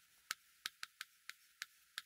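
Chalk writing on a chalkboard: a quick, uneven series of short, sharp taps as the chalk strikes the board, forming figures.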